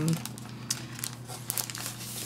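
Clear plastic wrapping on a pack of cardstock crinkling on and off as a sheet of black paper is slid out of it.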